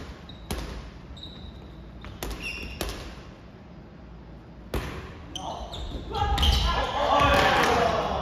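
Soft volleyball being hit and bouncing in a gym hall: several sharp smacks a second or two apart, each with a short echo. From about six seconds in, players' voices call out loudly over them.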